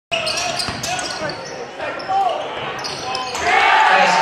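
Basketball dribbled on a hardwood gym floor, bouncing about three times a second in the first second or so, with shouts echoing around the gym. The crowd noise swells near the end.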